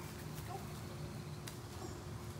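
Steady low background hum outdoors, with a faint chirp or two and one sharp click about one and a half seconds in.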